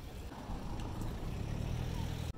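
Street noise with a motor vehicle's engine running, a low steady rumble that grows a little louder after the first half-second.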